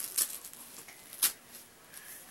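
A few short, sharp rustles of baby clothing and a disposable diaper being handled by hand, the loudest a little over a second in.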